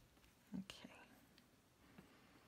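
Near silence in a small room, broken about half a second in by a brief, soft, whispered vocal sound, a breathy murmur from the person drawing.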